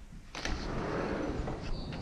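A glass door being opened: a sharp click about a third of a second in, then a steady rushing noise as the door slides open to the outside.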